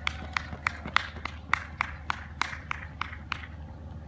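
Running footsteps of a runner in running shoes on asphalt, about three strides a second, passing close and fading away near the end.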